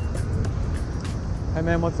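Low, steady rumble of city street traffic, with a man's voice starting to speak near the end.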